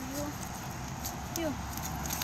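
Quiet outdoor background with two brief, faint vocal sounds: a short one at the start and a falling one about one and a half seconds in.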